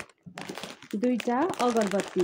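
Plastic grocery packets crinkling and rustling as they are picked up and handled, with a sharp click at the very start. A voice comes in over the rustling about halfway through.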